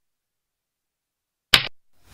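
Silence, then about a second and a half in a single brief swish, a sound effect marking a chess move being played on the animated board.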